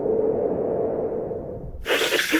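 Graphics transition sound effect: a steady hum-like tone that slowly fades, then a short whoosh near the end.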